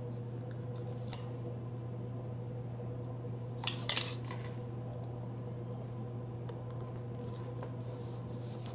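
Paper washi tape being unrolled and pressed down along a planner page, over a steady low hum: a faint tap about a second in, then a short burst of crisp crackling handling noise about four seconds in.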